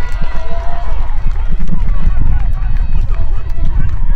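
Distant shouting voices of players on an open football pitch, over a heavy low rumble of wind buffeting the microphone.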